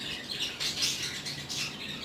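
Birds chirping in the background, a scatter of short high calls.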